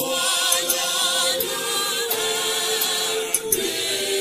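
Choral music: a choir singing held notes with vibrato.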